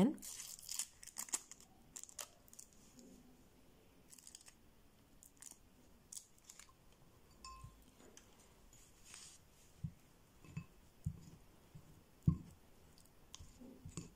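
Foil wrapper of a processed-cheese triangle being peeled open, a faint crinkling in the first second or two. Then scattered small clicks and a few light knocks near the end, as a plastic spoon works the cheese in a ceramic bowl.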